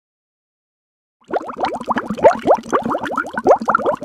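Dead silence, then about a second and a quarter in a dense, continuous bubbling of water starts: many quick overlapping rising blips.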